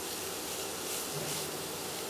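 Grated carrot and onion sizzling softly in oil in a nonstick frying pan, a steady hiss, while a spatula stirs them.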